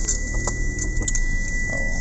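Car interior noise: a low, steady rumble of the engine and road, with a steady high-pitched tone running through it. A short laugh comes at the start.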